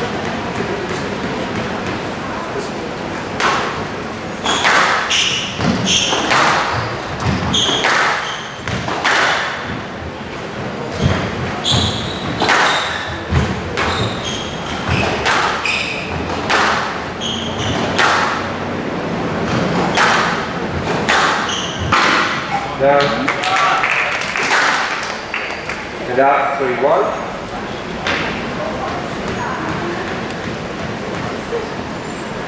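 A squash rally in a glass-walled court: a string of sharp hits, about one a second, as rackets strike the ball and it smacks off the walls, with short high squeaks between shots. Near the end the hits stop and voices are heard.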